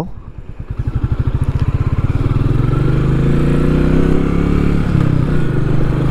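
Royal Enfield Meteor 350's single-cylinder engine pulling away after a gear change. Separate exhaust beats at first quicken into a rising low rumble that levels off.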